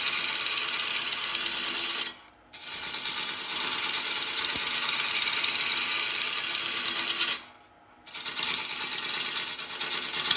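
A turning gouge cutting into a spinning oak and beech blank on a wood lathe, giving a steady, rasping scrape of wood being shaved away. The cut breaks off twice for about half a second, about two seconds in and again near the end, as the tool comes off the wood.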